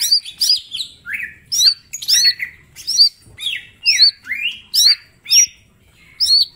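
Male green leafbird (cucak ijo) in loud, continuous song: a rapid run of chirps and whistled notes, about two phrases a second, each phrase mixing rising sweeps with high hooked notes and some harsher calls.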